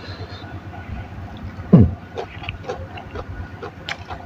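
Soft chewing and mouth clicks of someone eating by hand over a low steady background hum, with one short, falling, grunt-like voice sound a little under two seconds in.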